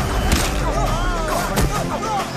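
Action film score with a wavering melodic line over a heavy steady bass, punctuated by sharp whip-like hit sound effects, one shortly after the start and another past the middle.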